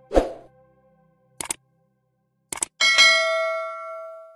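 Subscribe-button animation sound effects: a sudden thump, then two sharp double clicks like a mouse clicking, then a bright notification-bell ding that rings on and fades over about a second and a half.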